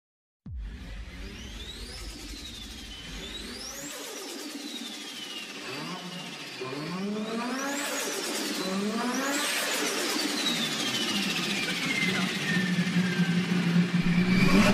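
Car engine revved several times, each rev rising quickly in pitch and falling away slowly, growing louder over the stretch.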